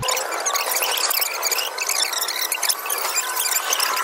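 A girl's ranting speech, fast-forwarded and pitched up into a high, garbled chipmunk-like chatter with no bass.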